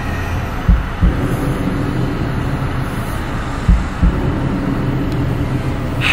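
Steady, fairly loud rumbling background noise with no clear pitch, broken by four short dull low thumps, two about a second in and two near the middle.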